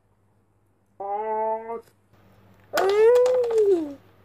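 A girl's wordless vocalizing while straining to pull apart a squishy foam toy: a short, steady held note about a second in, then a louder, longer cry that rises and then falls in pitch near the end.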